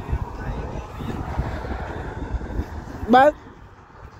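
A low, uneven rumble, then about three seconds in a short, loud cry that rises sharply in pitch: a person's voice.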